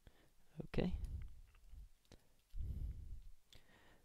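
A few faint, sharp clicks, with a short low rumble about two and a half seconds in.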